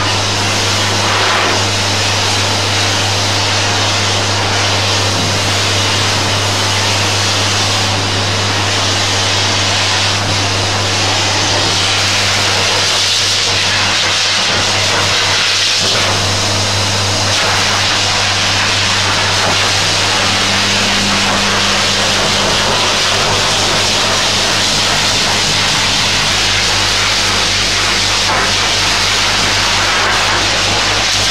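Electric pet blower dryer running steadily: a loud rush of air with a constant motor hum underneath, as its nozzle is worked over a wet dog's coat.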